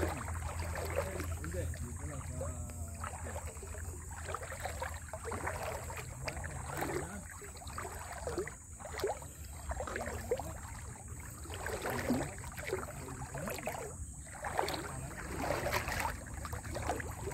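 Water splashing and sloshing in irregular strokes, about one a second, as someone wades through a shallow muddy river.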